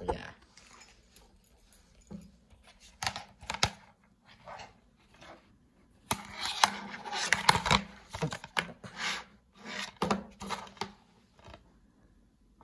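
A plastic DVD case and cardboard slipcover being handled on a table: a string of clicks, taps and rustles, busiest and loudest about six to eight seconds in. A low knock at the very start as the phone camera is set down.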